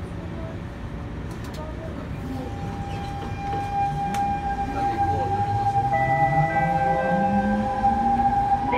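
C651 metro train's GTO inverter-driven traction motors pulling away: a steady electronic tone sets in, then a whine rises steadily in pitch from about four seconds in as the train gathers speed, with further fixed tones stepping in and out near the end.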